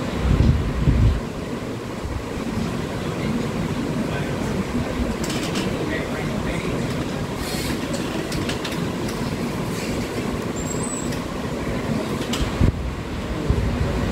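Steady rumbling room noise, with a short low rumble in the first second and a small knock near the end.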